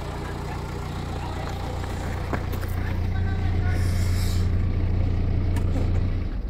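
Car engine idling: a steady low hum that grows a little louder toward the end.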